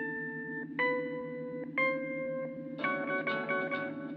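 Telephone on-hold music: three long held notes, each a step higher, over a steady repeating accompaniment, changing to quicker repeated notes about three seconds in.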